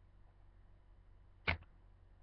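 Quiet room tone with a single short knock about one and a half seconds in.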